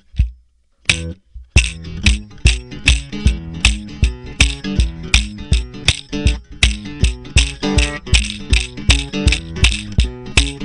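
A guitar played along with a foot-stomped DIY Mississippi drum machine stomp box, which gives a low thud with a rattle about twice a second. The music starts about a second in, after a brief silence.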